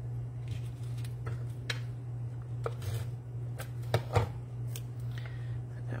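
Cardstock pieces being handled and pressed down by hand: scattered light taps and paper rustles over a steady low hum, with the sharpest taps about four seconds in.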